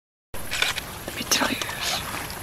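Red deer stag's legs splashing through shallow pond water as it wades in: a run of irregular splashes and sloshes that starts after a short dead-silent gap at the very beginning.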